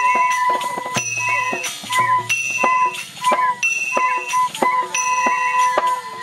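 An ensemble of bamboo transverse flutes (bansuri) playing a Newa folk melody in unison, mostly long held notes, over regular percussion strikes that keep the beat.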